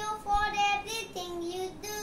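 A young boy singing, moving through a few short held notes.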